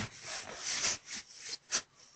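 Rubbing, rustling noise with no voice: a run of scraping strokes that break into several short separate strokes after about a second.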